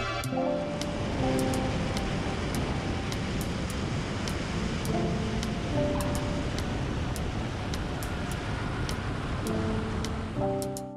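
Background music over the steady rushing of wind and engine noise from a Piper Cherokee Six rolling out along the runway after landing.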